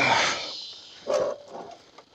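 A man laughing in short breathy bursts, the loudest right at the start and another just after a second in, over a background hiss that fades away.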